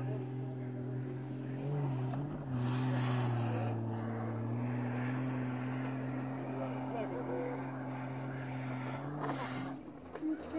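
Jeep Wrangler YJ engine running steadily as it ploughs through deep snow. Its pitch dips and rises slightly a few times, with a brief rush of higher noise a few seconds in.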